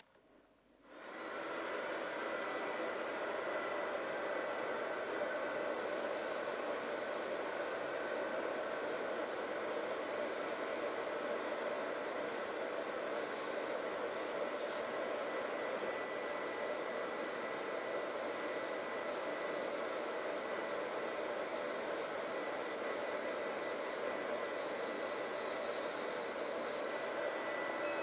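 Dust extractor starting up about a second in and then running steadily, with a faint steady whine. From about five seconds in, 180-grit sandpaper rubs against wood spinning on the lathe, heard as a rasp that comes and goes in short spells.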